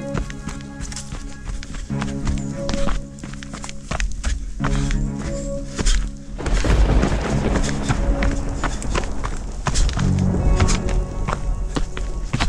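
Background music with a steady beat over sustained low chords; the sound thickens and gets louder about halfway through.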